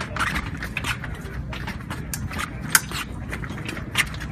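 Épée fencing bout: quick irregular footsteps and stamps of the fencers' footwork on the piste, mixed with sharp metallic clicks of blade contact, the sharpest about three quarters of the way through and right at the end. A steady low rumble of wind on the microphone lies under it.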